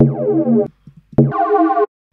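Two held notes from a Serum FM patch: a sine oscillator frequency-modulated by a second sine two octaves up, giving a glassy, metallic tone. The first sounds at once; the second starts a little past a second in, just after a short click.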